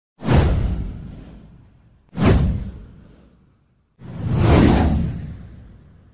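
Three whoosh sound effects of an animated intro. The first two hit suddenly and fade over about a second and a half; the third swells up about four seconds in and then fades away.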